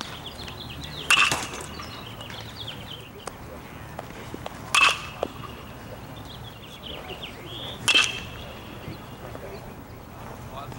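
Baseball bat hitting pitched balls three times, about three to three and a half seconds apart: each contact is a sharp crack with a brief ringing ping.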